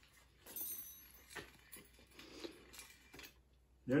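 Faint metallic clinks and scrapes of a spanner and bolt being handled against a steel A-frame, a few light knocks spaced through.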